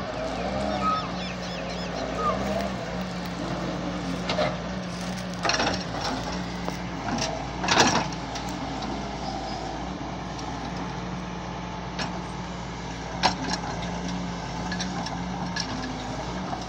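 Doosan DX140W wheeled excavator's diesel engine running steadily under load while the bucket digs and scrapes soil, with several sharp knocks, the loudest a little before halfway.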